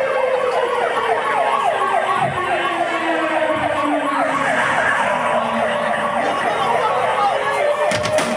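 A siren sounding: a slow falling wail under a rapid yelp that repeats about three times a second.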